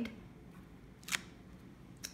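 Quiet handling of a clear acrylic stamp block pressed onto cardstock, with one short sharp click about a second in as the block is worked and lifted off the paper.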